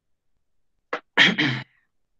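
A man's voice in one short burst about a second in, just after a brief sharp sound, then silence.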